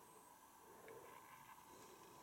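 Near silence: indoor room tone with a faint steady hum.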